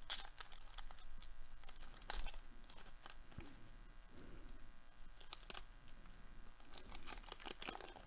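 A Baseball Treasure trading-coin pack being torn open and handled: faint crinkling and tearing of the wrapper, with scattered small crackles and one sharper crackle about two seconds in.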